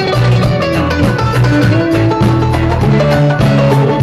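A live rock band playing an instrumental jam: electric guitar lines moving over held bass notes, with a steady drum beat.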